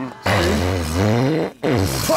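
A man's long, low, rasping comic belch lasting about a second, then a shorter one falling in pitch.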